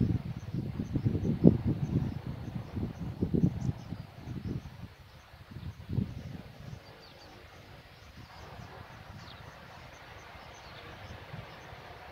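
Wind rumbling on the microphone in uneven gusts for the first few seconds, then the faint steady hum of a distant propeller plane taxiing on the runway, with faint insect chirps over it.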